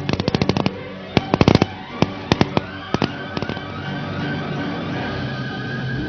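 Rifle fire in quick bursts and single shots through the first three and a half seconds, over background music that carries on after the shooting stops.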